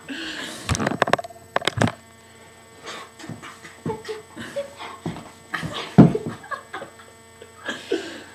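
Scattered sharp knocks and clicks among breathy mouth sounds and short voice fragments, with one strong thump about six seconds in, over a faint steady hum.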